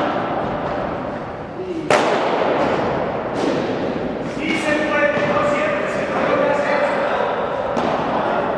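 Padel ball being struck back and forth in a rally: sharp hits of paddle on ball and the ball bouncing, echoing in a large indoor hall. The loudest hit comes about two seconds in, with a few more spread through the rest.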